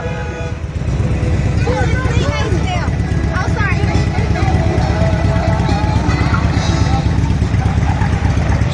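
A motor vehicle engine running close by: a steady, loud low rumble that swells about a second in, with people's voices faintly in the background.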